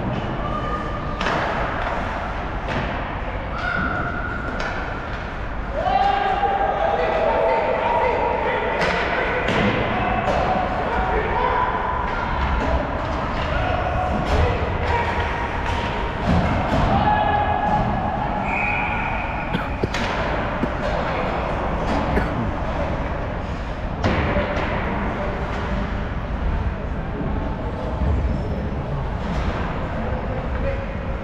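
Ice hockey play: repeated sharp knocks and thuds of sticks, puck and bodies against the boards and ice, with players' short shouts and calls, most of them between about 6 and 20 seconds in.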